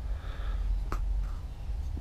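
A faint breath between sentences over a low steady rumble, with one small sharp click about halfway through.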